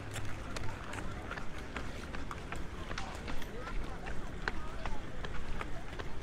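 Inline skates rolling and clacking on asphalt, many short sharp clicks scattered through, with indistinct voices of people chatting in the background.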